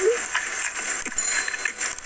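A bite into a chicken-tender wrap with crunchy tortilla chips inside, then chewing, over a steady hiss. A brief rising vocal tone sounds right at the start.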